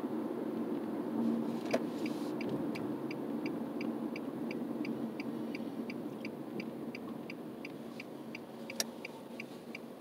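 A car's turn-signal indicator ticking steadily, about three ticks a second, over steady road and engine noise inside the cabin, with a couple of sharper single clicks.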